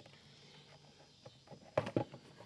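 Light plastic clicks and knocks of an air filter being handled and lifted out of its plastic air box, the sharpest knocks near the end.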